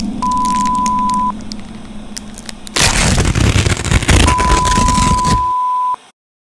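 An electronic beep tone at one steady pitch, heard briefly just after the start and again for nearly two seconds near the end, where it cuts off suddenly. Between the beeps comes a loud burst of harsh noise with a heavy low end, over a quieter crackle and hum.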